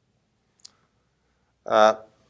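A pause in a man's talk: near silence with one faint click about a third of the way in, then a short drawn-out 'aah' from a man near the end.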